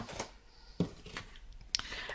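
Quiet handling of cardstock and tools on a tabletop, with a few brief clicks and taps.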